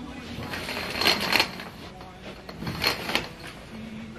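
Heavy eyelet curtains pulled shut along a metal curtain pole: the rings and fabric slide with a scraping rustle, once about a second in and again, more briefly, near three seconds.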